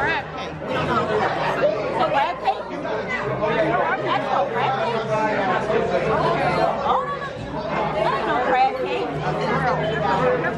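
Restaurant dining-room chatter: many voices talking at once at a steady level, with no single voice standing out.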